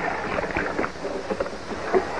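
Water splashing and dripping as a diver in a wet suit climbs out of the sea up the side of a boat, with water lapping against the hull.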